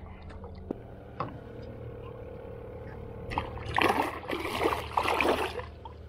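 A small tarpon thrashing at the surface beside the boat as it is grabbed by the jaw, throwing water in several loud splashing bursts over about two seconds in the second half. Before that come a few faint knocks over a steady low hum.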